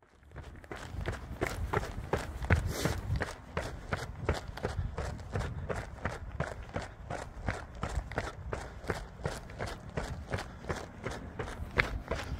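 A runner's footsteps on a paved pavement, running shoes striking in a steady quick rhythm of about three steps a second, during an easy cool-down jog. A low rumble from wind or traffic runs underneath.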